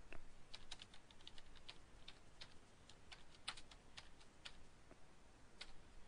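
Faint typing on a computer keyboard: a run of light, irregular key clicks.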